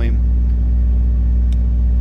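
A loud, steady low hum with several even overtones, unchanging in level.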